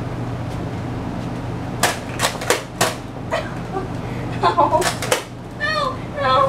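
Nerf dart blaster being fired and cocked: sharp plastic clacks in quick succession, four within about a second, then another cluster about two and a half seconds later.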